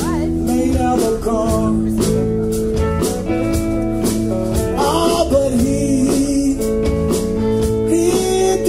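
Live blues-soul band playing an instrumental passage: electric guitar over bass and a drum kit, with held and bending notes over a steady beat.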